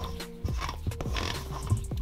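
Background music over a spatula folding macaron batter in a bowl, with a few short knocks and scrapes.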